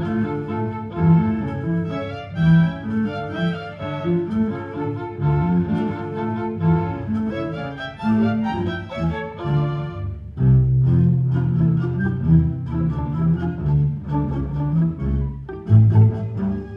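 Orchestra playing, with the bowed strings (violins, cellos and double basses) to the fore. About ten seconds in, a long low note is held under the moving parts above it.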